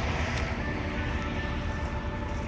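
Steady low rumble of wind buffeting the microphone in open country, with soft sustained notes of background music coming in about half a second in.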